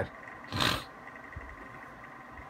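A single short, breathy puff of air from a person, about half a second in, with no voice in it, then low room noise.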